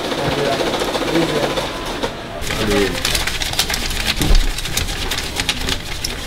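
Electric banknote counter running, riffling rapidly through a stack of bills, with voices chatting in the background.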